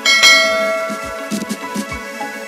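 A bell-ding notification sound effect: one sudden chime that rings out and fades over about a second, over background music.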